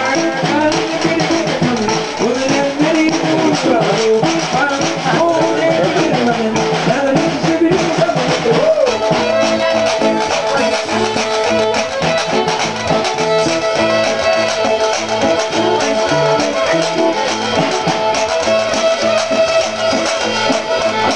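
A small live band playing an upbeat tune on electric archtop guitar, drum kit, fiddle and washboard. About halfway through, a long high note is held steadily over the band.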